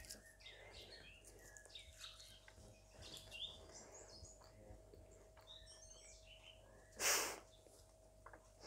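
Faint birds chirping outside, short high calls scattered throughout, over a faint steady hum. About seven seconds in comes a single short, loud, breathy burst, like a sharp exhale or a laugh through the nose.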